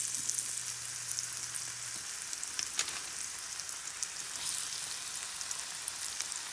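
Flour-coated stuffed potato croquettes (papas rellenas) sizzling steadily as they fry in hot olive oil in a pan, with scattered crackles, one sharper crackle about halfway through.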